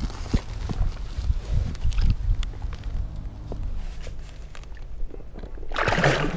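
Knocks and rustling from handling close to the microphone as a bass is lowered to the water, then a splash near the end as it is released into the pond.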